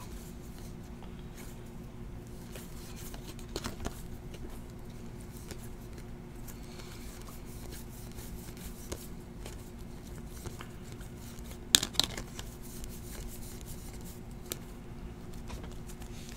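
Baseball trading cards being flipped through by hand, faint slides and ticks of card stock against card stock over a steady low hum, with one sharper click about twelve seconds in.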